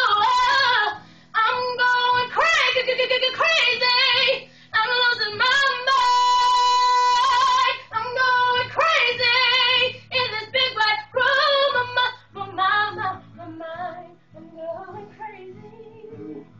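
Young woman singing solo in melismatic runs with vibrato, holding one long note in the middle, then growing softer and more broken near the end.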